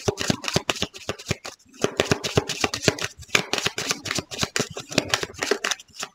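A deck of tarot cards shuffled by hand: a quick, uneven run of soft card clicks and riffles, with a brief pause about one and a half seconds in.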